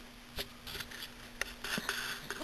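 Sleeping dachshund snoring: a couple of small clicks, then a short snore about one and a half seconds in.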